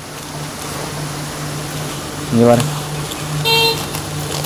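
A short, high horn toot about three and a half seconds in, over a steady low hum.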